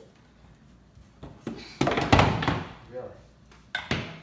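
Several heavy thuds and knocks, the loudest around two seconds in and a sharp one just before the end, as a small wooden child's chair is knocked about and set down on a hard floor.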